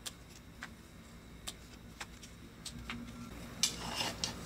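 Scissors snipping through pepper-leaf stems: a handful of soft, sharp clicks at irregular intervals.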